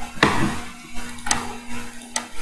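Two sharp computer-mouse clicks about a second apart, over a steady low hum.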